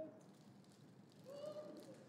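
Near silence: faint room tone, with a short, faint voice heard well off the microphone a little past halfway through.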